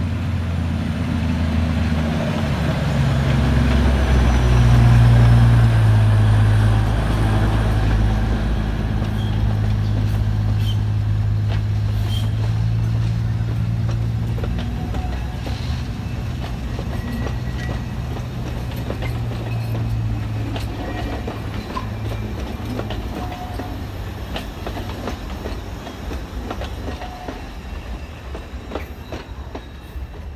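Alishan Forest Railway diesel locomotive passing with its engine running, loudest a few seconds in. Its passenger cars then roll by with wheels clacking over the rail joints, the sound slowly fading as the train moves away.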